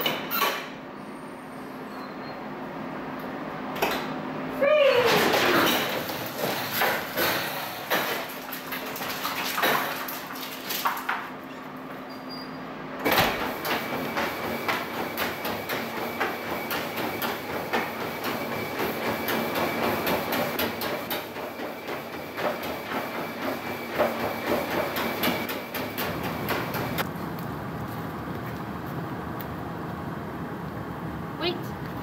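Metal wire doors of kennel crates clanking and rattling as they are worked open, with a brief falling squeal about five seconds in. Then a treadmill running, with a steady high whine and the quick, even footfalls of a dog walking on the belt.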